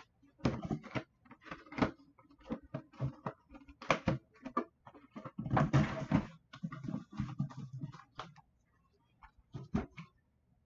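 Handling noise of a plastic mini football helmet and its cardboard box: a string of short knocks and rustles, with a longer cardboard scrape about five and a half seconds in as the box is closed.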